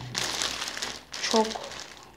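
Thin plastic wrapper of a loaf of sliced toast bread crinkling as the loaf is handled and turned over, for about the first second.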